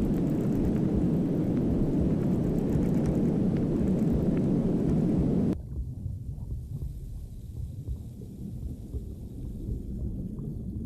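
Ambient sound design for an animation. A dense low rumbling rush with a fine crackle on top runs until it cuts off suddenly about five and a half seconds in. A quieter low rumble with faint scattered clicks follows.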